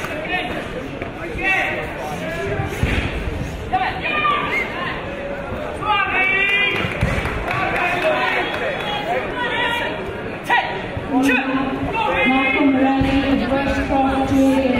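Spectators and coaches shouting over one another in an echoing sports hall during a knockdown karate bout, with a few thuds from kicks and punches landing. Near the end one voice holds a long, drawn-out shout.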